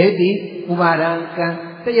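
A Buddhist monk's voice reciting in a chanted, sing-song tone, syllables held on a steady pitch with short breaks between phrases.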